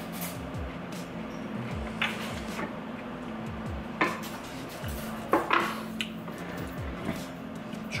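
Plates, small dishes and wooden serving boards being moved and set down on a wooden table: a few separate knocks and clatters over background music.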